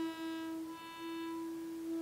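Buchla modular synthesizer drone: the oscillators of a 259e and a 258v crossfaded in a slow loop through a 292e Quad Dynamics Manager, driven by a 281e quad function generator triggering itself. One steady pitch holds while its upper overtones slowly fade in and out as the scan passes from one oscillator to the next.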